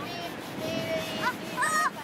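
A young child's high voice singing out in long held notes, the loudest near the end.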